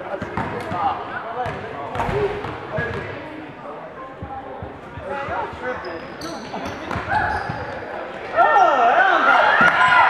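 Basketball bouncing on a hardwood gym floor in a large echoing hall, with sharp knocks scattered through and the voices of players and spectators; the shouting gets louder about eight seconds in.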